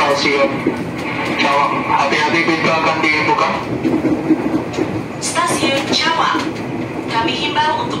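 Interior running sound of a 205 series electric commuter train car under way, with a voice announcement and music on the train's PA over it.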